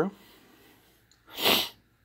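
A single short sniff through the nose about one and a half seconds in: a breathy hiss that swells and fades within about half a second.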